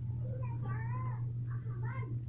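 Kitten meowing twice, two high-pitched arching calls, over a steady low hum.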